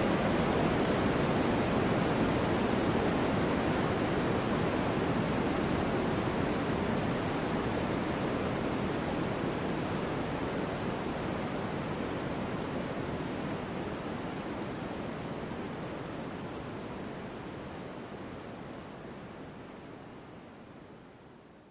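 A steady rushing noise like static, with its weight in the lower middle, that starts abruptly and slowly fades away.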